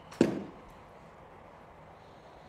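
A single sharp knock about a fifth of a second in, dying away within a quarter second, over a low steady room background.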